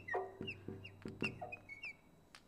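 Marker squeaking on a glass lightboard while a word is written, a run of about seven short, high squeaks, each dipping slightly in pitch.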